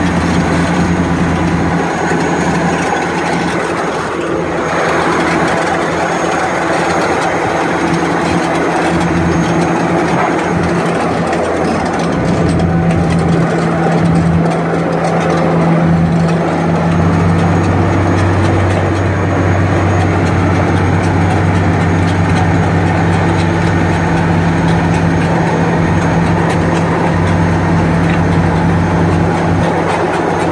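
Heavy diesel engines running hard under load as a D9T bulldozer pushes a loaded lowboy trailer up a grade. The engine note stays steady and grows stronger about halfway through.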